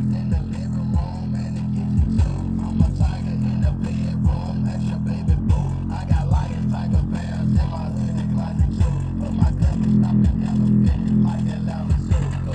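JBL Charge 4 Bluetooth speaker playing a bass-heavy music track in its LFM bass mode, with deep sustained bass notes and repeated low hits about twice a second.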